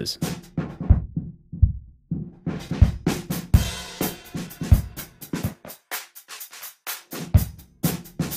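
A soloed drum track played through an SSL 4000 E channel-strip emulation while its filters are swept. About a second in, the high cut closes down and the drums turn dull and muffled, then open back to full brightness at about two and a half seconds. Near the end the low cut sweeps up, and the kick and body drop away so the drums go thin and quiet before coming back full.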